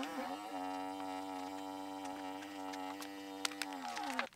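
Kingroon handheld battery-powered electric vacuum pump running on the valve of a filament vacuum storage bag, drawing the air out. It is a steady motor hum that starts suddenly, settles within a fraction of a second and holds, dipping slightly in pitch near the end as the bag empties. A few light clicks come near the end.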